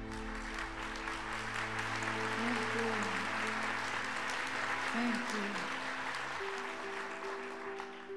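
Audience applauding steadily, with the held notes of closing music underneath; the lowest note drops out a little past the middle.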